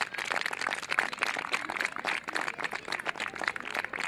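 Audience applauding: many hands clapping in a dense, irregular patter at the close of a karate form.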